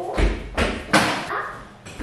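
A few dull thumps and knocks in quick succession, the first the deepest, from objects being handled and set down.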